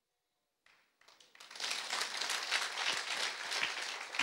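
Audience applauding, starting about a second in and continuing steadily.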